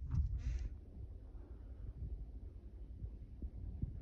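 Handling noise from a handheld phone camera being moved about a room: a low rumble with scattered soft thumps, and a brief rustle just after the start.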